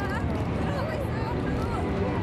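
Low, steady engine rumble of an amphibious tour boat driving into the lake, under excited high-pitched exclamations from its passengers.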